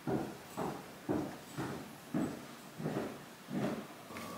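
Soft, evenly spaced knocks, about two a second, each dying away quickly.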